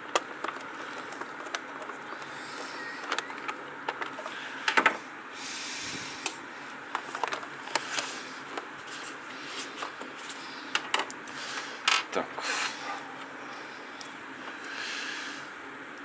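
Small hand screwdriver turning screws into the plastic back of an electronic instrument's case, with sharp clicks and knocks as the case is handled. The loudest cluster of clicks comes about five seconds in.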